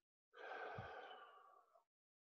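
A man's long sigh into the microphone, starting about a third of a second in and fading away after about a second and a half, with a soft low bump partway through.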